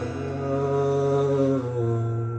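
A live song in a sparse passage: a singer holds a long note over a sustained guitar chord, with no drum hits.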